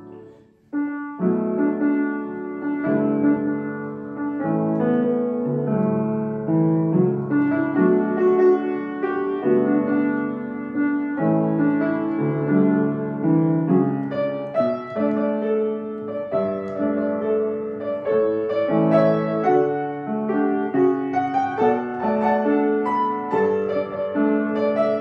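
Upright piano played solo with both hands, chords in the bass under a melody. A held chord fades to a brief pause, and the playing comes back in loudly about a second in and runs on without a break.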